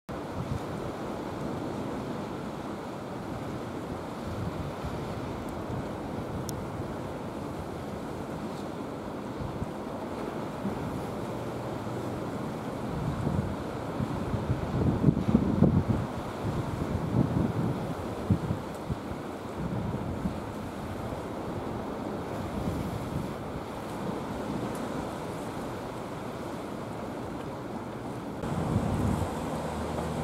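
Strong wind buffeting the microphone over a rough, whitecapped sea, with the sea's wash underneath. The gusts are heaviest about halfway through.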